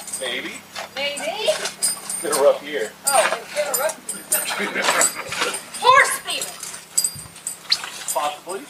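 People talking, with voices running through the whole stretch but too indistinct to make out words.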